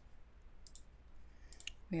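A few faint computer mouse clicks in two small clusters, one a little under a second in and one about a second and a half in, over a low steady hum.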